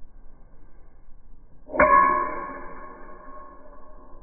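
A sharp clink about two seconds in as a spinning kick strikes the cap of a green glass Perrier bottle, followed by a clear ringing tone that fades over about two seconds.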